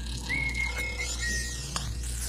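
Animated-film soundtrack music with a high, thin held note that steps down slightly about a second in, and a short sharp click near the end.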